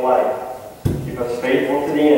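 Voices speaking the liturgy of a church service, with one sharp thump a little under a second in.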